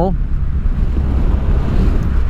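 Steady wind noise on the microphone of a motorcycle ridden at road speed, loud and low, with the Triumph Rocket 3's three-cylinder engine running underneath.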